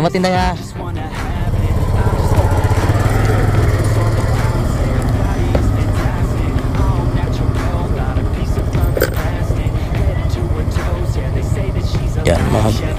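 Motor scooter engine running steadily, with a fast, even low pulse, coming in about a second in after a brief voice.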